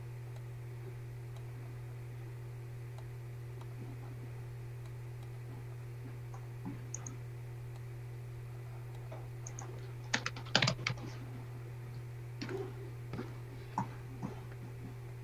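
Computer keyboard typing: a short quick run of keystrokes about ten seconds in, then a few scattered key or mouse clicks near the end, over a steady low hum.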